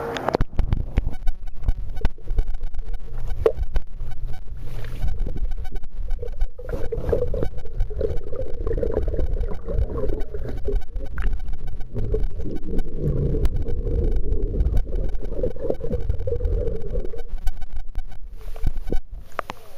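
A camera plunged into a swimming pool: a splash, then the muffled underwater rumble of churning water with bubbles popping. From about six and a half seconds in, a muffled wavering hum runs under the water noise until near the end.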